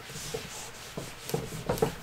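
Whiteboard eraser rubbing across a whiteboard in several short wiping strokes, clearing off marker writing.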